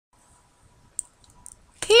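Near silence broken by one sharp click about halfway through and a few softer clicks after it, then a woman's voice says "Hey" at the very end.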